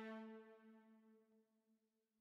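A single held note from a sampled string section in the AREIA library, fading away to silence over the first second and a half.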